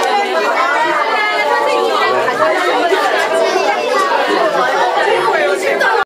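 Steady, overlapping chatter of many voices, young children and adults talking at once in a crowded room, none of it clear enough to make out words.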